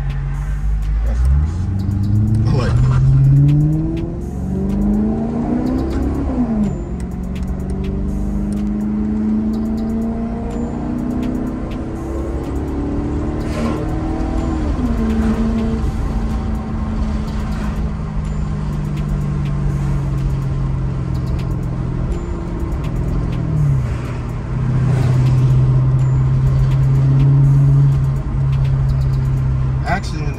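Maserati GranTurismo's engine heard from inside the cabin as the car accelerates. Its pitch climbs from about a second in, falls back at upshifts around 4 and 7 seconds, and climbs and drops again around 14–15 seconds. It then runs fairly steadily at cruise, with a brief dip near 24 seconds.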